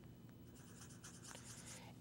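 Faint marker on a whiteboard as a point is plotted: a couple of faint ticks and a soft scratch near the end, otherwise near silence.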